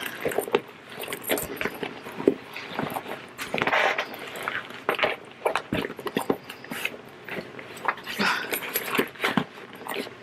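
Handling noise of a sewn fabric-and-vinyl zippered bag being turned right side out: irregular rustling and crinkling of the stiff material, with light clicks and jingles from the metal zipper pulls.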